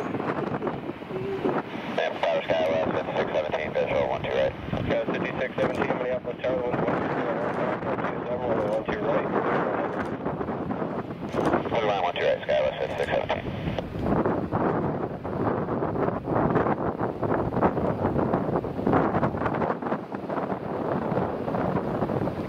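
Wind buffeting the microphone over the steady low running of a taxiing Airbus A350-900's Rolls-Royce Trent XWB engines, with indistinct voices at times.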